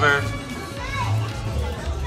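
Children's voices at play over background music with a steady low bass line; a voice trails off at the very start.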